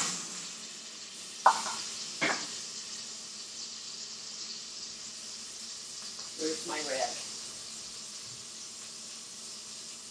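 Bacon grease sizzling in a hot pot on the stove, a steady hiss, with two sharp knocks about a second and a half and two seconds in.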